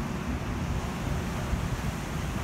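Wind blowing across the microphone as a steady low rush, with the wash of the shallow sea behind it.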